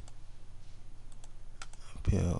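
A few sharp, scattered computer mouse clicks over a faint low steady hum.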